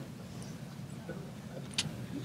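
Quiet room tone with a low hum, and a single sharp click near the end from a microphone being handled while it is switched over.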